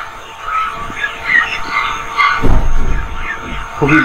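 Frogs calling around flooded ground: many short, repeated calls overlapping. A low rumble comes in about halfway and lasts about a second.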